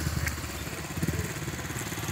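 An engine running with a low, even pulse, quieter than just before and then holding steady.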